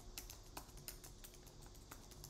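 Faint, irregular keystrokes on a computer keyboard as a terminal command is typed.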